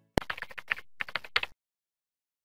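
Computer-keyboard typing clicks: a sharp click, then a quick run of key clicks that stops abruptly after about a second and a half. It accompanies the outro logo animation, where the web address is spelled out.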